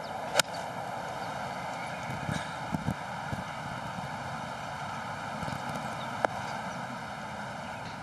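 A golf ball struck with a wedge or short iron off the fairway: one sharp click of clubface on ball just after the start. A steady outdoor hum follows while the ball is in flight, with one faint click about six seconds in.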